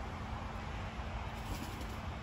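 Steady low outdoor rumble with no distinct sound standing out.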